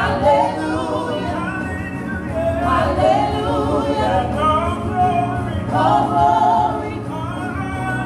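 Gospel praise-and-worship singing by a small group of four singers at microphones, sustained sung lines held about a second at a time over a steady low accompaniment.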